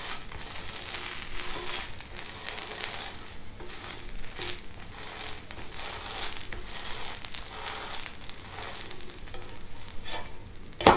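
Stuffed bread sandwich toasting on a hot non-stick tawa, sizzling steadily, with a spatula pressing and scraping it against the pan.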